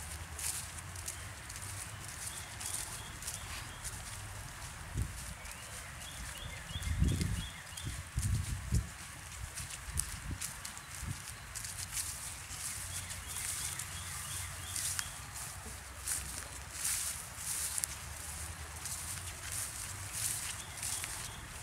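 Footsteps swishing through grass and leaf litter on a woodland path, while a bird calls a few times in short series of evenly repeated high notes. Low thumps on the microphone are the loudest sounds, about seven to nine seconds in.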